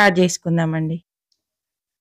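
A woman speaking for about a second, then her voice cuts off into dead silence.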